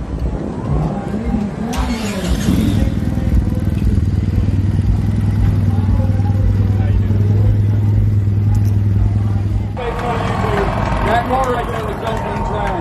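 A V8-engined custom motorcycle trike running at a steady idle, with people talking around it. The engine sound cuts off about two seconds before the end, giving way to voices and crowd noise.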